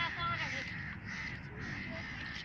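Several children's voices calling out and chattering over one another, high-pitched.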